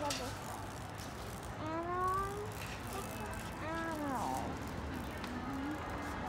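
A voice making a few short, drawn-out sounds with sliding pitch, over a steady low background hum.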